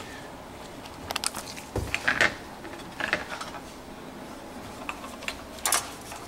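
A few scattered clicks and light clatters as a plastic microwave stirrer cover with its metal stirrer blade is handled, with a duller thump about two seconds in.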